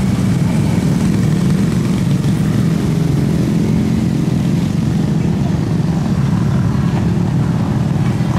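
Steady rumble of road traffic, cars and motorbikes crossing a pontoon bridge.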